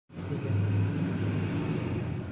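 A steady low mechanical hum with a strong low tone, a little louder in the middle.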